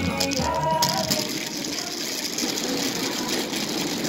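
Music ends about a second in and gives way to a steady, noisy rattle.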